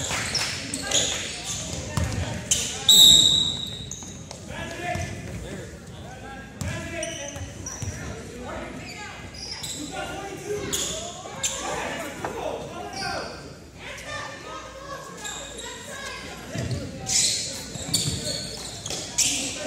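Basketball game in a large gym: the ball bouncing on the hardwood and sneakers squeaking, with players' and spectators' voices echoing around the hall. The loudest moment is a brief high-pitched tone about three seconds in.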